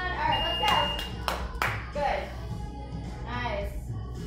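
A few sharp hand claps in quick succession about a second in, over background pop music with a singing voice.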